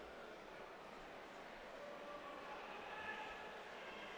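Faint, hushed murmur of a large arena crowd, steady, with a few distant voices rising slightly about two to three seconds in.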